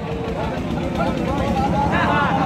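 People talking at a busy livestock market, with a louder voice near the end, over a steady low rumble.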